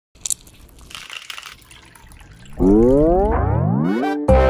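Channel intro sound effect: a faint crackling noise with a couple of clicks, then, about two and a half seconds in, a loud rising tone with several overtones sweeping up in pitch as the logo appears.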